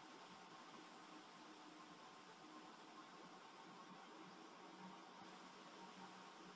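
Near silence: faint steady hiss of the recording between narration.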